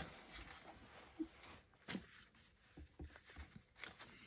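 Near silence with faint handling sounds: a soft cloth rubbing right at the start as an ink blending tool is wiped clean on a rag, then a few light, isolated taps.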